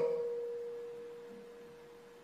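Microphone feedback ringing in a chamber sound system: one steady mid-pitched tone that fades away gradually over about two seconds after the voice stops.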